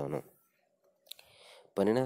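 A lecturer's speech breaks off for about a second and a half, with a single sharp click about a second in, then the speech resumes.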